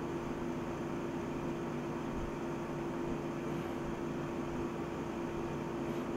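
Steady hum and hiss of a room air conditioner picked up by the microphone, with one constant low tone.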